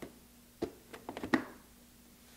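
Brew funnel being slid into a BUNN Velocity Brew coffee brewer: a single click, then a quick run of clicks and knocks as it seats, the loudest about a second and a half in.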